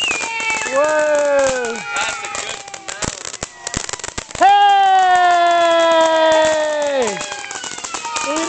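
Ground fountain firework spraying sparks with a scatter of sharp crackles. Two long drawn-out tones sound over it: a short falling one near the start, and one about halfway through that holds nearly steady for close to three seconds before dropping away.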